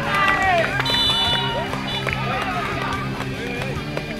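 Players shouting and cheering as a goal goes in, several voices at once with the loudest yell in the first second. Background rock music runs under them.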